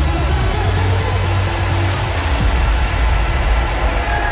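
Electronic dance music playing loud from a DJ set, with a heavy sustained bass line; the treble drops away about two and a half seconds in while the bass carries on.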